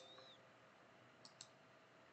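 Near silence with two quick, faint computer mouse clicks about a second and a quarter in.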